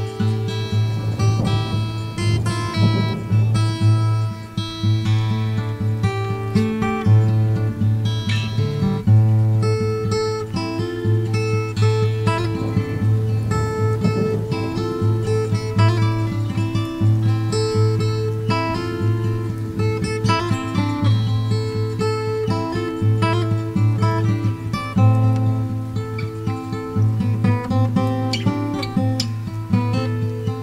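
Acoustic guitar instrumental: plucked notes ringing over a repeating low bass note.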